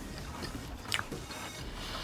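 Chewing a mouthful of chicken pizza with the mouth closed: faint mouth sounds with a sharper click about a second in.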